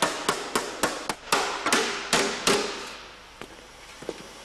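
Panel-beating hammer striking sheet metal: about nine quick, sharp blows with a short metallic ring, about four a second, then a single lighter tap near the end.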